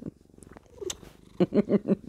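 A domestic cat purring faintly, held against the microphone while being cuddled. Near the end a woman laughs briefly.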